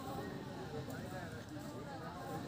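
Indistinct voices of people talking in the background, overlapping.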